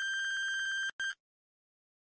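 Quiz countdown timer's electronic time-up beep, signalling that the answer time has run out: one long, steady, high beep of about a second, then a short beep just after.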